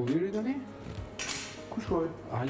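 Metal utensils clinking and scraping against dishes on a kitchen counter, with a brief hiss about a second in.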